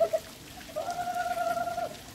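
A person's voice calling out one long, level, held note, lasting about a second, after a brief call at the start.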